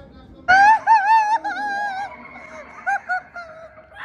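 A loud, high-pitched wavering wail starts suddenly about half a second in and lasts about a second and a half. Two short, quieter wavering cries follow near the three-second mark.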